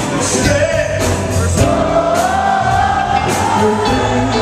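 A live funk band playing, with a singer over it. About one and a half seconds in, a long, wavering sung note rises and is held almost to the end.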